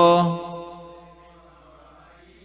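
A man's voice holding one chanted note at a steady pitch, fading out within about the first second, then a faint quiet room.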